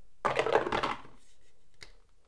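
A pair of six-sided dice rolled into a dice tray, rattling and clattering for about a second, with a small click near the end.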